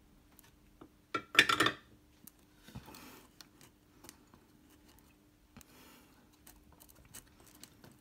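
A metal guitar control plate, with its pots and blade switch, being handled and turned over by hand: a loud metallic clink about a second and a half in, then softer rustling and light clicks.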